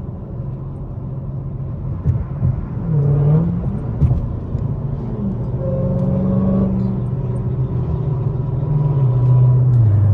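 Supercharged V8 of a Dodge Hellcat fitted with headers, heard from inside the cabin while cruising on the highway: a steady low engine drone that dips and climbs in pitch about three seconds in and falls away near the end as the throttle eases.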